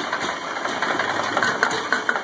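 Volvo 245's fuel-injected four-cylinder engine idling roughly and unevenly, stumbling as it draws Seafoam engine treatment in through a vacuum line and struggles to keep running.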